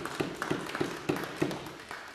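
A few people clapping in a steady, even rhythm of about four claps a second, fading away near the end.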